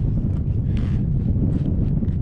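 Strong wind buffeting the camera microphone, a steady loud rumble. A brief rustle of the paper map being handled comes a little under a second in.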